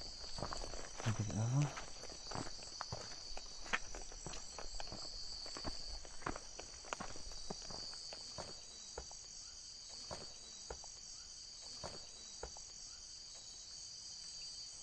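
Steady high chirring of night insects such as crickets, with footsteps and scuffs on rough ground and vegetation as someone walks. About a second in comes a short low voice-like sound rising in pitch, presented as a voice whose words can't be made out.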